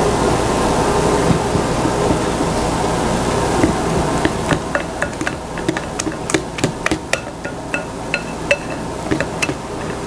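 A wire whisk working cake batter in a ceramic mixing bowl: a dense, steady stirring noise, then from about halfway many sharp, irregular clinks of the metal whisk against the bowl.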